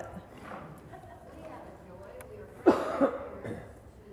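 A congregation member speaking faintly, off-microphone, then about three seconds in two short, loud coughs close to the microphone.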